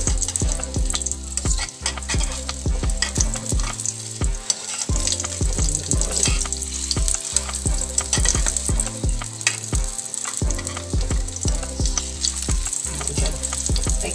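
An egg sizzles as it fries in a metal wok, with a metal spoon scraping and tapping against the pan again and again as the egg is pushed around.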